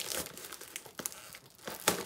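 Clear plastic shrink-wrap crinkling and tearing as it is pulled off a model kit's cardboard box, with a sharp snap about a second in and another near the end.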